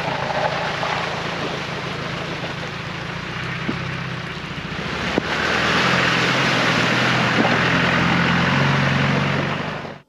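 A Land Rover Discovery's engine runs steadily under the sound of the 4x4 moving through water and mud. About halfway through there is a sudden change, and the engine gets louder with a rushing noise over it.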